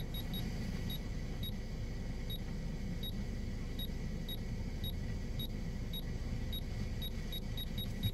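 Short, high electronic beeps from an aftermarket car head unit, about sixteen at irregular intervals, as its buttons are pressed, over a low steady rumble.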